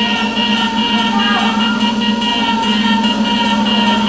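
Electronic dance music from a DJ's turntable-and-mixer set during a breakdown: sustained synth tones with a light pulsing rhythm on top and no bass.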